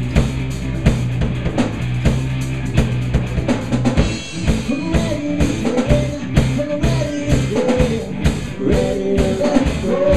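Live rock band playing an instrumental passage: drum kit beating steadily under electric guitar. About four seconds in, the sustained low notes stop and a lead guitar line with bending notes comes in over the drums.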